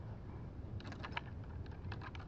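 Nunchaku clattering: a quick cluster of sharp clicks about a second in and a few more near the end as the sticks and chain are tossed, caught and rolled in the hand, over a low steady rumble.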